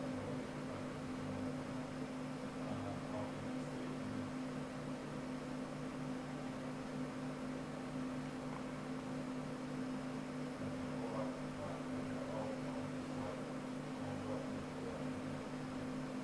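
A steady machine hum with a low, constant tone under a faint hiss.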